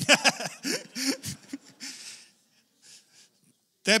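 A man laughing close into a microphone: wheezy, breathy bursts of laughter for about the first second, then a few softer breathy chuckles that die away.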